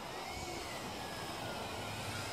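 Small toy quadcopter's electric motors and propellers whirring steadily, with a faint whine that drifts slightly up and down in pitch.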